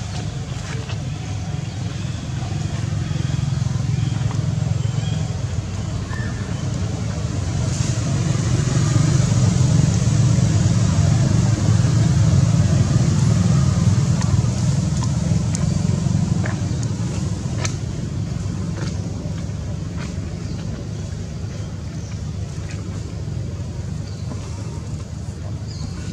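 Low motor rumble, swelling louder about eight seconds in and easing off again after about sixteen seconds, with a few faint clicks on top.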